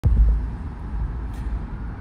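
Road traffic noise: a steady low rumble of passing cars, loudest for the first moment after a click at the very start.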